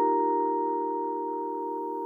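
Held closing chord of a short electronic keyboard jingle, its steady tones slowly fading.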